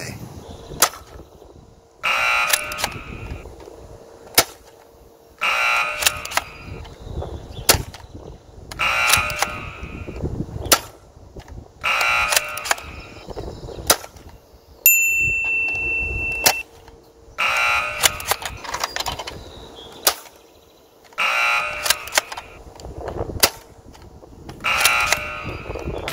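A Nerf Spectre Rev-5 foam-dart blaster is primed and fired again and again, about seven shots every three to four seconds. Each shot is a short rattling burst and a sharp snap. Wind rumbles on the microphone throughout.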